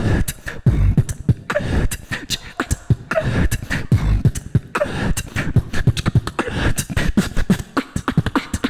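Solo beatboxing into a handheld microphone, amplified through a PA: a steady beat of deep kick sounds with fast sharp clicks and hissing hi-hat sounds between them, and a short voiced note recurring every second and a half or so.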